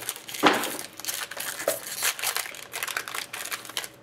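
Foil wrapper of a hockey card pack crinkling and tearing as hands work it open: a run of irregular crackles, the loudest about half a second in.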